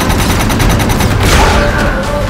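Star Wars blaster sound effect: a heavy repeating blaster firing rapidly, about a dozen shots a second for about a second, followed by a louder burst.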